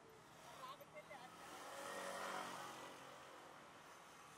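A motor scooter's small engine passing close by, faintly, swelling to a peak about two seconds in and then fading.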